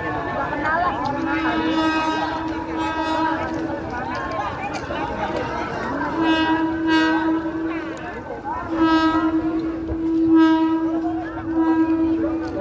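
Horn of a KRL Commuter Line electric train sounding as the train approaches slowly: three long held blasts, the last starting about three-quarters through and running on. Voices of people beside the track come between the blasts.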